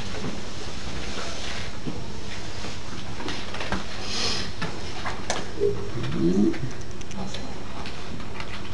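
Classroom room tone: a steady low electrical hum with scattered small knocks, a brief soft swish about four seconds in, and a short low pitched sound about six seconds in.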